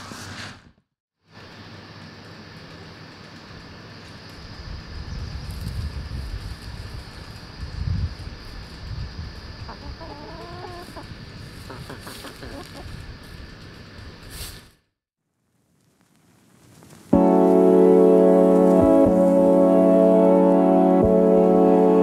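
Outdoor yard background in which a hen gives a brief call about ten seconds in. After a short silence, background music starts about seventeen seconds in and carries on steadily.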